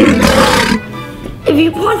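A single short, loud roar like a big cat's, lasting about three-quarters of a second, with a falling pitch.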